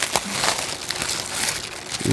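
Thin plastic bag crinkling and rustling as it is peeled back off a plastic tub, a run of irregular small crackles.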